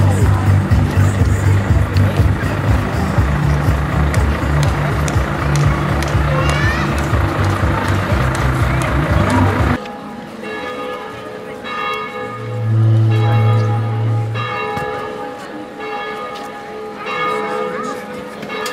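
Loud amplified music with a pulsing bass, played from a loudspeaker in a car's open boot. The music cuts off abruptly about ten seconds in, and quieter ringing bell-like tones follow.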